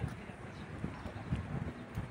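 Wind buffeting the phone's microphone, making irregular low rumbling thumps several times a second.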